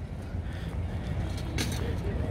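Low, steady rumble of road traffic, with a short hiss about one and a half seconds in.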